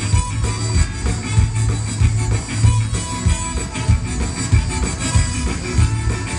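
Live zydeco band playing an instrumental passage: accordion over a steady bass and drum beat.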